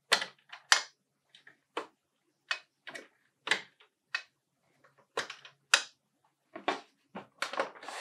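Sharp plastic clicks and snaps as the blue flip-up caps on the ink tanks of an Epson ET-3760 EcoTank printer are opened one after another. A dozen or so clicks come at uneven intervals, closer together near the end.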